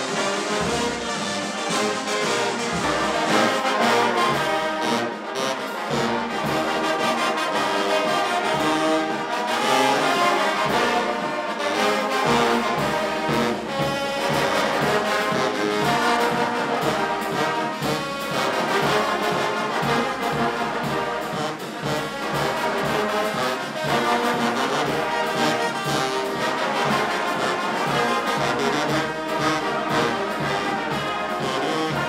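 Live brass band of trumpets, trombones and a sousaphone playing a tune, with a steady pulse of low bass notes.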